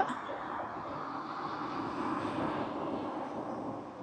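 Road traffic on a street: a steady hum of passing vehicles that swells slightly and eases off near the end.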